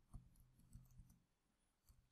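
Near silence with a few faint computer keyboard key clicks as text is typed.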